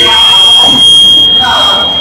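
A voice speaking through a stage PA, with a steady high-pitched feedback whine held over it.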